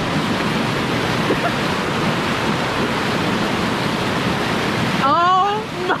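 Whitewater rushing steadily over and between river boulders in a small rapid. About five seconds in, a person's voice cries out over it.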